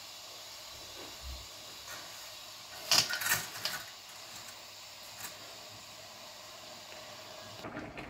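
Diced onions and green pepper sizzling steadily in oil in a nonstick frying pan, with a few quick knocks and scrapes of a wooden spoon against the pan about three seconds in and one more a couple of seconds later.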